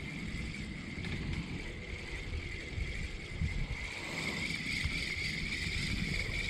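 Low, uneven wind rumble on the camera microphone, with a faint steady high-pitched whine throughout.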